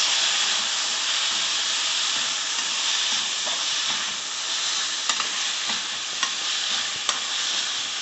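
Chopped onions, tomatoes and green chillies sizzling steadily in an open aluminium pressure cooker while a long perforated metal spatula stirs and scrapes the pan. A few light clicks of the spatula on the metal come near the end.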